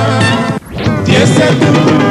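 Congolese rumba band music with a male lead voice over guitars and drums. About half a second in, the sound cuts out sharply for a moment, then the music comes back in.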